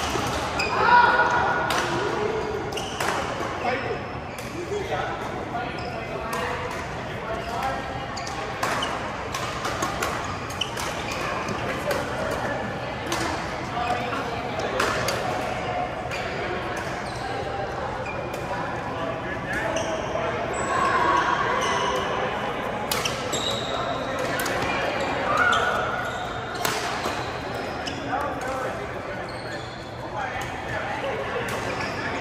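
Badminton rackets striking a shuttlecock during rallies: sharp, irregular clicks. Players' voices and calls echo through a large sports hall.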